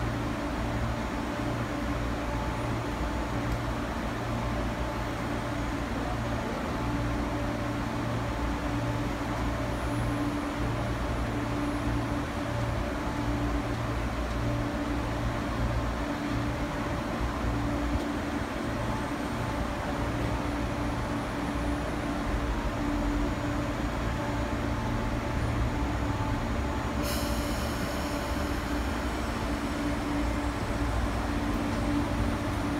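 MTR East Rail Line MLR electric multiple unit standing at the platform, its onboard equipment giving a steady low hum. Near the end a high-pitched tone starts suddenly and carries on.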